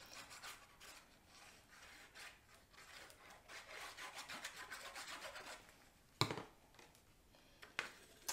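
Faint scratching of a liquid-glue bottle's nozzle dragged across cardstock, with a run of quick strokes in the middle, then a single sharp tap as the paper mat is set down and pressed onto the card base.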